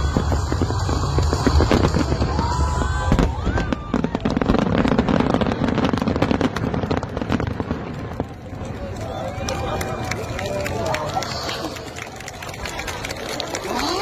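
Fireworks finale: rapid crackling and popping from many shells bursting at once, with crowd voices mixed in. The crackling is densest in the first half and thins out after about eight seconds.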